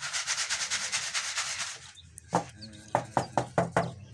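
Plastic tuff-tile mould full of wet concrete mix being worked against a concrete slab. There is a rapid scraping and rubbing for about two seconds, then a run of sharp knocks as the mould is tapped down to settle the mix.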